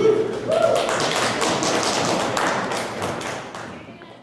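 Audience applauding, with a couple of short whoops in the first second; the clapping fades out near the end.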